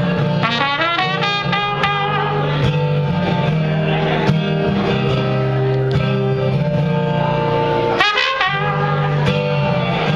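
Trumpet playing a melody over strummed acoustic guitar, with a flurry of short notes near the start and a quick rising run at about eight seconds.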